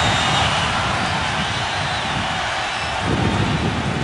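Steady noise of a large stadium crowd, with a swell in the lower part of the sound about three seconds in.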